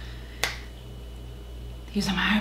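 A single sharp click about half a second in.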